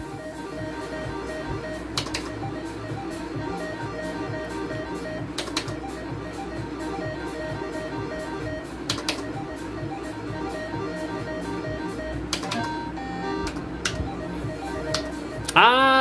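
Slot machine game music: a plucked, guitar-like tune over a steady repeating beat, with a sharp click every three to four seconds as the reels are spun.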